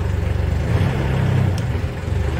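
Lifeboat's diesel engine running with a steady low throb; its note picks up for about a second in the middle and then settles as the throttle-and-gear lever is pushed towards ahead.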